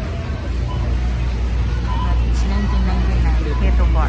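Shopping cart rolling over a concrete store floor, a steady low rumble, with shoppers' voices in the background.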